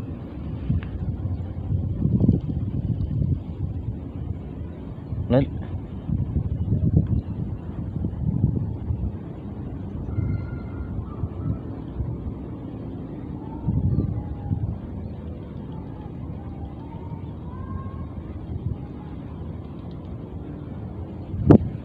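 Wind buffeting the microphone: a low, uneven rumble that swells in gusts every few seconds, with a brief high, thin gliding sound about five seconds in.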